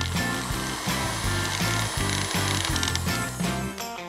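Small personal blender running, pureeing a jar of whole strawberries, then stopping shortly before the end. Background music with a steady beat plays under it.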